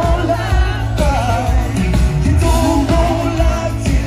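Live pop band playing, with a male lead singer and backing vocals over drums and heavy bass, heard through the festival PA.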